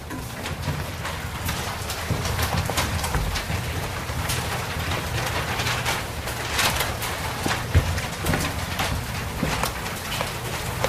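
Felt board eraser rubbing across a chalkboard in repeated strokes, wiping off chalk writing.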